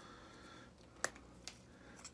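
A quiet sharp click about a second in, then a fainter one: the push-on end cap of a tenkara rod being handled as it pops off.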